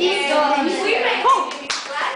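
Voices talking in a classroom, with a few quick sharp claps near the end.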